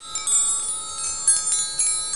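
Wind chimes tinkling: a cluster of high, bright ringing tones struck again and again, starting abruptly and slowly thinning out.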